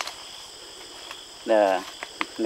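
Steady high-pitched drone of rainforest insects, with one short, held vocal call from a man about one and a half seconds in.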